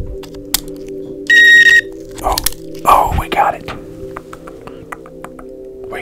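Miniature Operation game's buzzer sounding once, a steady high beep of about half a second, signalling that the tweezers touched the metal edge of a cavity. Small clicks of the metal tweezers against the game come before and after it.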